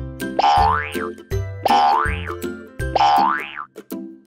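Children's song backing music with a steady bass line, overlaid three times by a sound effect that sweeps up in pitch and back down, about a second apart.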